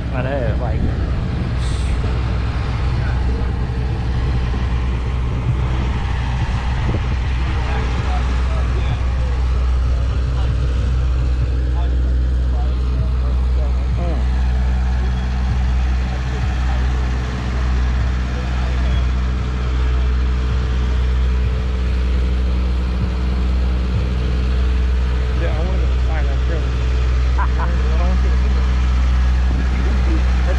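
Steady low mechanical drone of an idling engine that does not change in pitch, with voices in the background.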